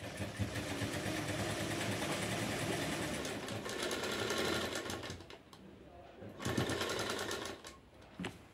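Sewing machine stitching a sleeve into a blouse armhole, running at a fast even needle rhythm for about five seconds. It stops, then runs again briefly for about a second and a half.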